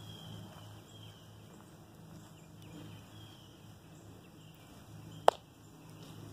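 Faint outdoor background with a few short, high bird chirps and a steady low hum. A single sharp click comes about five seconds in.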